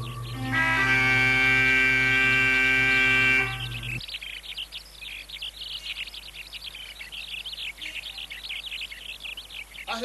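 Background music holds a single chord for about three seconds and then stops. After that, small birds chirp busily.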